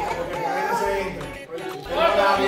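Indistinct chatter: voices talking over one another, no words clear.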